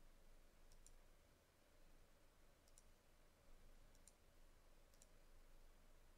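Four faint computer mouse clicks, each a quick double tick of button press and release, spaced one to two seconds apart over near silence.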